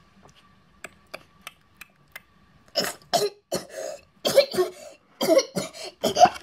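A few faint clicks, then a girl coughing repeatedly, about eight short coughs in the second half, acted out as a doll choking on a cookie.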